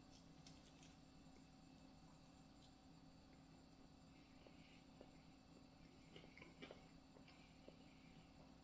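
Near silence with a faint steady room hum and a few faint, scattered crunching clicks, mostly in the second half, from a person chewing crispy fried chicken.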